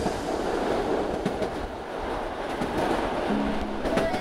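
A locomotive-hauled train running along the track: a steady, even rumble and rush without a clear beat. A low steady tone comes in near the end.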